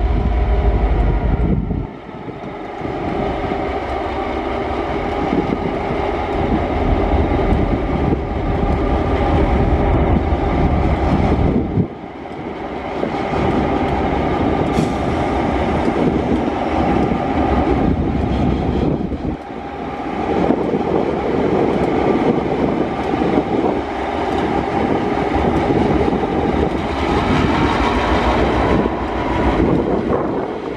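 TasRail diesel locomotives working past slowly, their engines running with a steady, loud drone and deep rumble. The sound dips briefly three times as the units go by.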